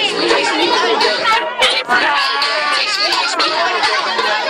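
A crowd of children chattering, many voices at once.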